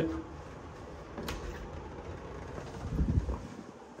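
Hotel room door being handled over a faint low room hum: one sharp click about a second in, then a low thud about three seconds in.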